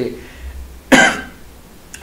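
A single short cough, close to the microphone, about a second in.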